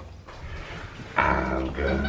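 A quiet moment, then a little over a second in a low-pitched man's voice starts, playful and drawn out.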